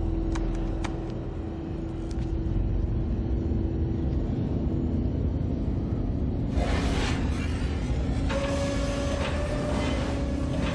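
A TV episode's soundtrack: a low, steady rumbling drone with a held low tone. About six and a half seconds in a rushing hiss comes in, and a higher held tone joins about two seconds later.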